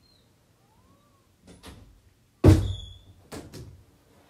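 A few knocks: soft ones about a second and a half in, then a loud thump a little past halfway with a brief ringing after it, then two lighter knocks.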